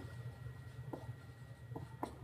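Dry-erase marker writing on a whiteboard: faint, short strokes over a low steady room hum.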